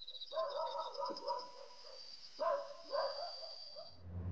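Rope swing creaking in slow, wavering strokes, loudest twice near the end, over a steady high chirring of night insects.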